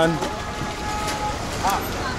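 Busy city-street traffic noise: motor scooters running past close by, with a thin horn-like tone about a second in and a brief passer-by's voice near the end.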